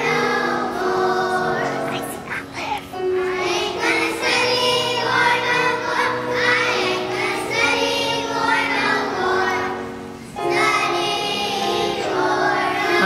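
Children's choir singing a song with upright piano accompaniment, with short breaks between phrases about two and a half and ten seconds in.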